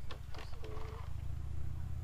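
Low, steady rumble, with a brief faint murmur of a voice a little over half a second in.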